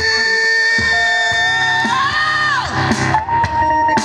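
Live music: sustained keyboard tones over a low pulsing beat. A melody line glides up about halfway through and drops away about three seconds in.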